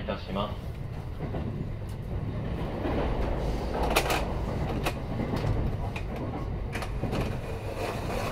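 JR West 223 series 1000 electric train running, heard from inside the car: a steady low rumble of wheels on the rails, broken by a few sharp clicks from the wheels over the track, the loudest about halfway through.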